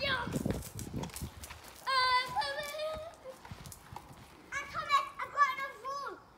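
Young children squealing and shouting in play, in two bursts: one about two seconds in and another near the end.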